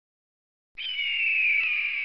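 Short intro sound effect: a falling, hoarse tone over a hiss, about a second and a half long, that cuts off abruptly.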